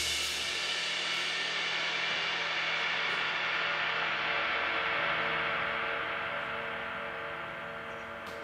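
Soultone cymbals ringing out after the final crash of a drum-kit piece, the wash fading slowly away with no further strikes.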